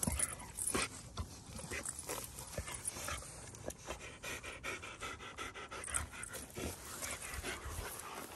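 A large dog panting close by, quick breaths coming a few times a second.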